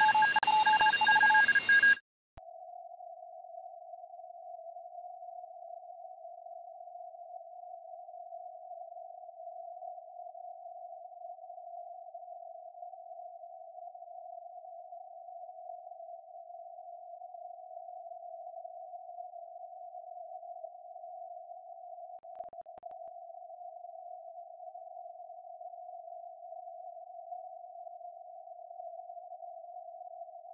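Receive audio of a SunSDR2 DX software-defined radio tuned to 14.022 MHz in the 20-metre CW band. For about two seconds a wide filter passes band hiss with several steady carrier tones. Then the sound cuts abruptly to a steady, narrow hiss of band noise through the CW filter.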